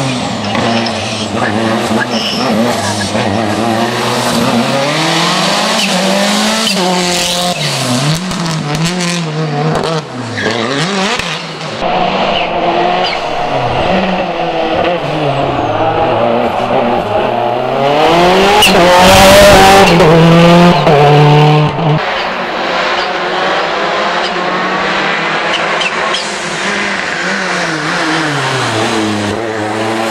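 Lancia Delta Proto S7 rally car's engine revving up and down over and over as it weaves through a cone slalom, each gate bringing a drop and a fresh climb in pitch. It is loudest as the car comes close, about two-thirds of the way through.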